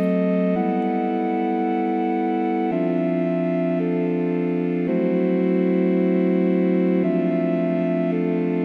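Electronic track made in Reason 2.5 playing sustained organ-like synthesizer chords with no drums. The chord changes about every two seconds.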